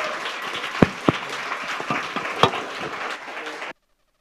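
Audience applauding, with a few sharper single claps standing out. The applause cuts off suddenly near the end.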